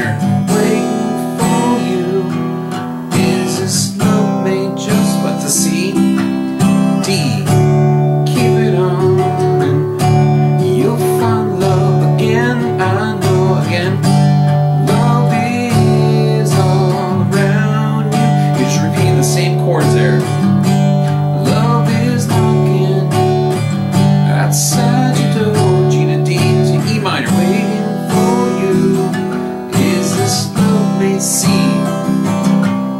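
Acoustic guitar strummed steadily in open chords, moving between G, D, E minor and C, with a regular strumming rhythm.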